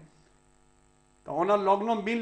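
Near silence with a faint steady electrical hum for just over a second, then a man's voice resumes speaking.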